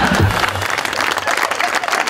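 Studio audience applauding, a dense steady clatter of many hands clapping.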